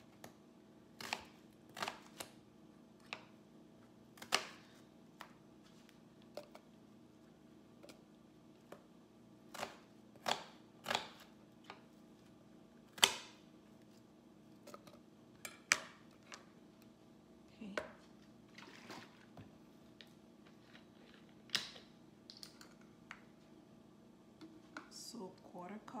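Kitchen knife cutting an onion on a plastic cutting board: irregular sharp knocks of the blade striking the board, spaced about half a second to two seconds apart, over a faint steady hum.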